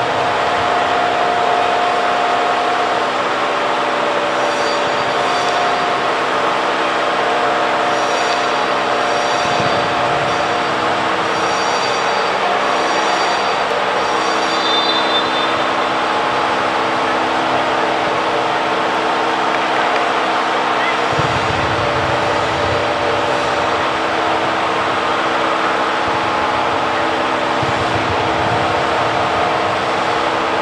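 Ambience of an indoor football hall: a constant rushing noise with a steady hum, and distant voices of players and spectators.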